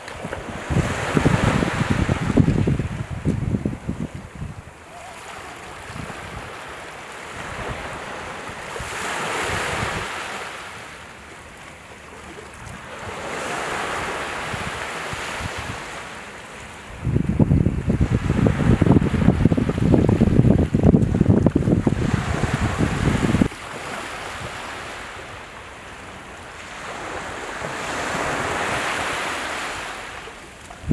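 Sea waves washing onto the shore in slow surges every few seconds, with gusts of wind buffeting the microphone, heaviest near the start and for about six seconds past the middle.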